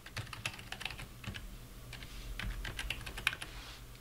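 Typing on a computer keyboard: a quick, irregular run of light keystrokes.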